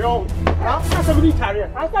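Raised voices shouting in a quarrel, with a sharp knock about half a second in and a few lighter knocks near the end.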